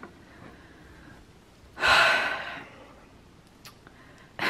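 A woman's breathy sigh: one audible exhale about two seconds in, fading over under a second, over faint room tone.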